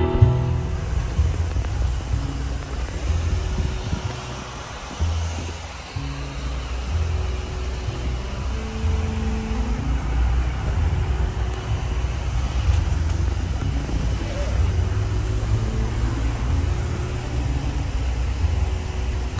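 Steady low road and engine rumble inside the cabin of a moving Lincoln MKT stretch limousine.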